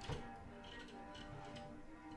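Solo cello played with extended technique: a sharp percussive click just after the start and about four lighter ticks in the middle, over quiet sustained bowed notes.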